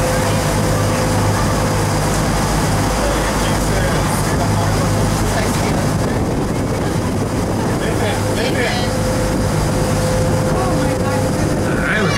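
A sightseeing boat's engine running under way with a steady low drone and a constant hum, over rushing water noise.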